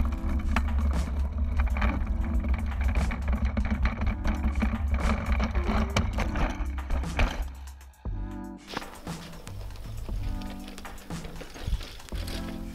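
Background music over a low rumble from a camera mounted on the handlebars of a riderless mountain bike rolling down a dirt road. The rumble stops about eight seconds in, after the bike has fallen over.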